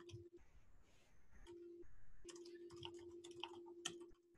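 Faint typing on a computer keyboard, a quick run of key clicks mostly in the second half, over a low steady hum that cuts in and out.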